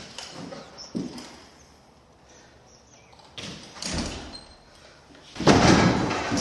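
Handling noise of a full sheet of drywall: a few knocks and scrapes, then a loud thump and scraping near the end as the board is lifted and set against the wall framing.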